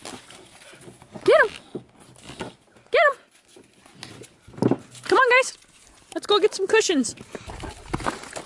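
A dog's short yips and barks during play, each call rising and falling in pitch, with a run of longer, wavering calls late on.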